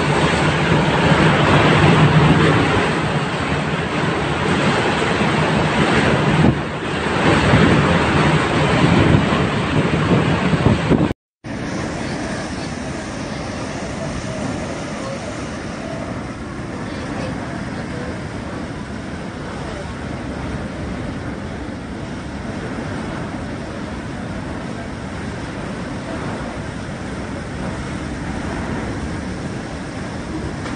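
Super typhoon wind blowing hard with driving rain at landfall, loud and gusting. About eleven seconds in there is a brief cut, after which the wind goes on as a steadier, slightly quieter rush.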